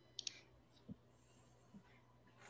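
Faint computer mouse clicks: a quick double click just after the start, then a soft low thump about a second in.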